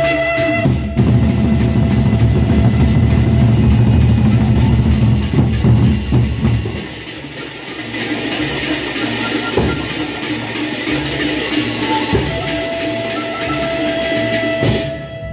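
Gendang beleq ensemble, the large Sasak barrel drums beaten together in a loud, dense passage for the first six seconds or so. Then softer, sparser drumming with sharp single strikes follows, and a held ringing tone comes in near the end.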